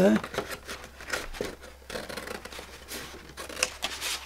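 Scissors cutting through cardstock in a run of irregular snips.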